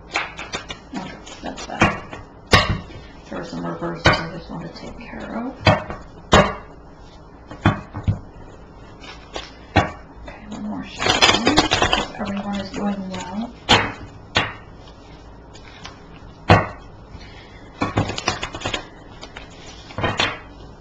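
A tarot deck being shuffled by hand: irregular sharp taps and slaps of the cards, with a longer, denser run of card noise about eleven seconds in.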